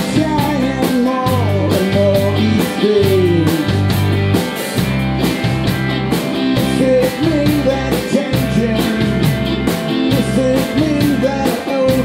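A rock band playing live in a room: electric guitars and a drum kit keep a steady beat while a male singer sings the lead line.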